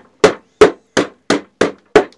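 A hammer striking reed stalks packed in a wooden hive-making press, six quick blows at about three a second. The pressed reeds are being knocked so they settle evenly into the places where the press holds them less tightly.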